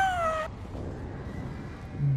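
A man's high-pitched excited yell, falling in pitch and lasting about half a second, then a quieter rumbling movie soundtrack.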